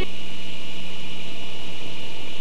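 Steady hiss with a low hum and a faint high whine underneath: the signal noise of a VHS recording over a black gap between television commercials.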